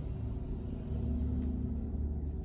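Steady low rumble of background noise in a parked car's cabin, with no distinct events.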